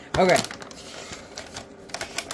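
Mylar bag crinkling as it is handled, with a few faint crackles near the end.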